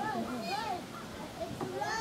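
White-tailed deer fawn bleating: two short high calls, each rising then falling, in the first second.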